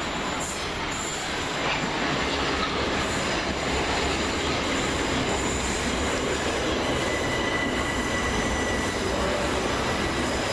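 Class 377 Electrostar third-rail electric multiple unit running past close by, a steady rumble and rush of wheels on rail that grows a little louder about two seconds in. A thin high squeal sounds for about two seconds from around seven seconds in.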